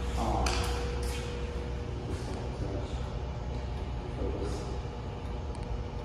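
Faint, indistinct voices over a steady low hum in a large room, with two short hissing bursts about half a second and a second in.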